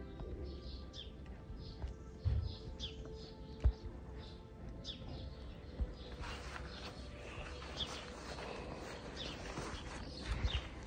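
Small birds chirping outdoors: short high calls repeating about twice a second, getting busier in the second half. A few low thumps sound among them.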